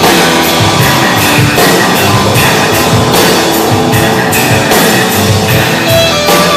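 Live blues-rock band playing loud and instrumental: electric guitar and bass guitar over a drum kit keeping a steady beat with cymbal hits.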